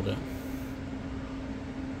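Room tone: a steady low hum under faint, even background noise.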